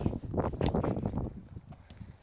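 A soccer ball being kicked on grass: a short sharp thud or two about half a second in, amid rustling and handling noise from a jostled phone.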